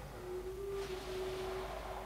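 A faint, steady single tone held at one pitch over quiet room tone.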